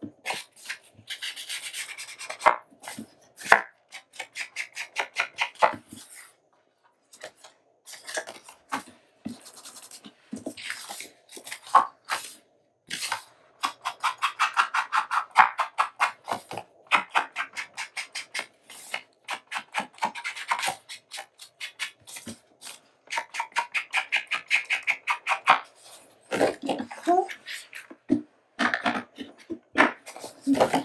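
Ink blending tool swiped and dabbed against paper edges, a quick run of short rubbing strokes, several a second, with brief pauses as the page is turned.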